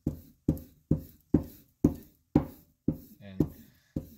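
A bar of buffing compound rubbed back and forth along a strop block, about two strokes a second, each stroke starting sharply and fading.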